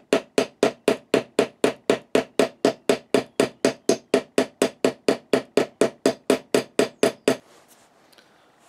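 Small hammer striking metal in a fast, even rhythm of about four blows a second, peening over the nails used as rivets to pin the wooden handle scales to the knife's tang. The blows stop shortly before the end.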